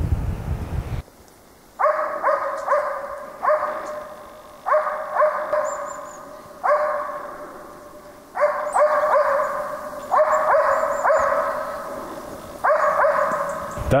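Hunting dog barking at a moose it is holding at bay, in runs of two to four barks with short pauses between, each bark fading away after it.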